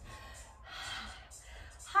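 A woman breathing out audibly from the effort of a workout: two breathy exhales, the second longer and louder. She starts the word "high" right at the end.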